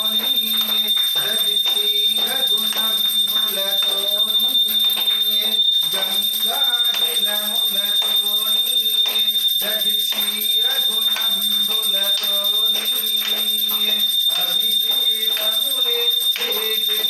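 A voice chanting Sanskrit puja mantras without a break, over a steady high-pitched whine.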